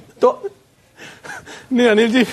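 A man's short gasp and soft, breathy laughter, then a brief pause, and talking resumes near the end.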